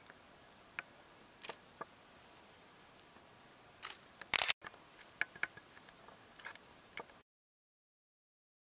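Faint steady hiss with scattered small clicks and ticks, and one brief, louder burst of hiss a little after four seconds; the sound cuts to dead silence about a second before the end.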